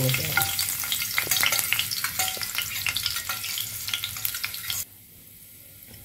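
Oil sizzling and crackling in a nonstick frying pan as small chopped pieces fry in it, a dense run of fine pops that cuts off suddenly about five seconds in.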